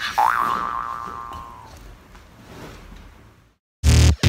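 A cartoon-style 'boing' sound effect: a wobbling, twanging tone that dies away over about a second and a half. Music cuts in just before the end.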